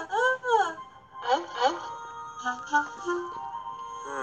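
Background music from an animated children's story app, a steady held tone under short swooping, voice-like cartoon sounds in the first two seconds and a few short notes at different pitches after the middle.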